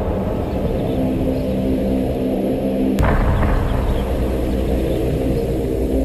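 Dark, bass-heavy dubstep with a deep rumbling low end under held low notes. A sharp hit about halfway through brings the deep bass in heavier.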